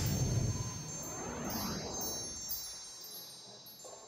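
Shimmering, wind-chime-like chimes with high ringing tones that ring on and slowly fade away. A low rumble sounds briefly at the start.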